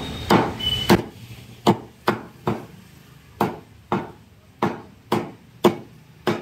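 A cleaver chopping raw chicken into pieces on a wooden log chopping block: about ten sharp, loud chops, a little under two a second, each with a short ring from the wood.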